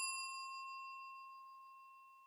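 Bell-chime notification sound effect from a subscribe-button animation: one ding, struck just before, rings with a few clear high tones and fades steadily away, dying out near the end.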